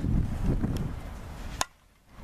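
Outdoor wind rumbling on the microphone, then a single sharp knock about a second and a half in, after which the sound drops out almost completely.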